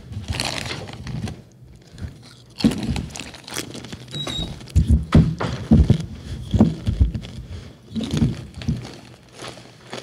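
A potato chip bag crinkling as a hand reaches into it, then potato chips being crunched and chewed close to a microphone, in a run of irregular crunches from a few seconds in.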